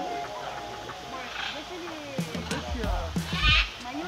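Background pop music with sung vocals; a heavy bass beat comes in about two-thirds of the way through.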